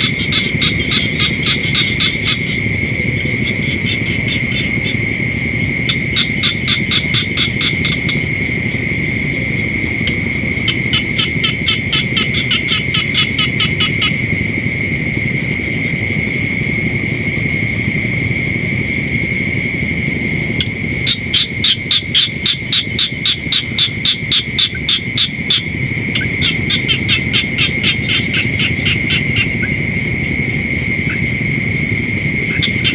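Frogs calling at night: repeated bouts of rapid pulsed calls, each a few seconds long and the loudest about two-thirds of the way through, over a steady high-pitched trill and a low rumble.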